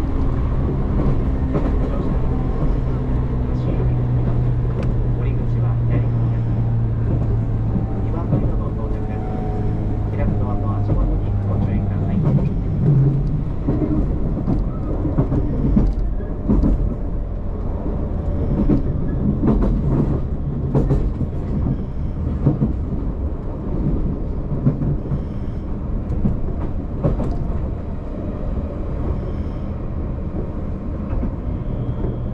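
Interior running noise of a JR Kyushu 813 series electric train. A steady low hum with faint tones runs for the first dozen seconds and fades, then irregular clicks of the wheels over rail joints and points take over.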